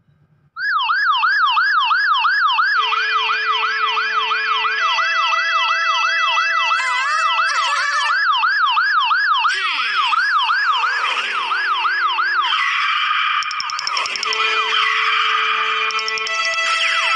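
A siren-like wail sweeping up and down rapidly, about three times a second, with steady held tones beneath it. About twelve seconds in the wail gives way to music.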